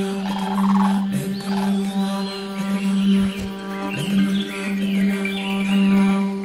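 Song intro: a sustained low drone note held steady with a stack of overtones, with bird chirps and twitters over it.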